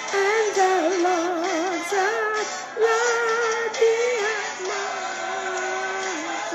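A woman singing a worship song over backing music, holding her notes with a wide vibrato across several short phrases.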